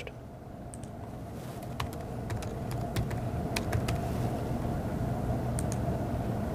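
Laptop keyboard keystrokes: about a dozen separate, unevenly spaced key clicks as an IP address is typed in. Under them runs a steady low hum that slowly grows louder.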